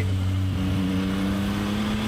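Yamaha MT-09 Y-AMT's 890 cc CP3 three-cylinder engine pulling under acceleration, its pitch rising slowly and evenly as the automated gearbox holds a long gear without shifting.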